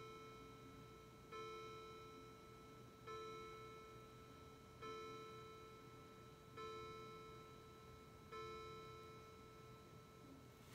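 A faint bell-like chime, the same ringing note struck about every second and three quarters, five times, each one fading away before the next.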